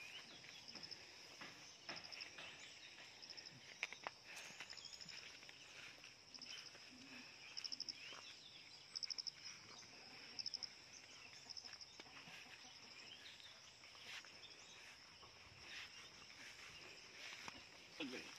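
Faint outdoor insect chorus: a steady high buzz with short, rapid pulsing trills every second or two, and a few soft clicks.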